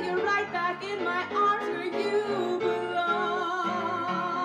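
A woman singing with vibrato over upright piano accompaniment, settling into a long held note about three seconds in.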